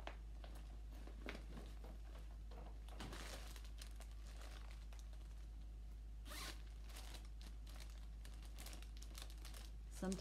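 Faint handling of a fabric cross-stitch project bag: a zipper being worked and the bag and its contents rustling in short, irregular scraping strokes, busiest in the second half.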